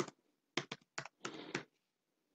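A quick run of computer keyboard keystrokes, typing in a password: a handful of separate key clicks starting about half a second in, then a fast cluster of clicks ending around a second and a half in.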